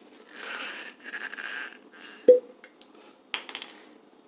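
A glass wine bottle being uncorked: rough rubbing and scraping as the cork is worked out of the neck, then one sharp pop a little past two seconds in, followed by a few light clicks.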